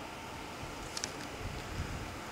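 Faint, steady outdoor background rumble with a light click about a second in.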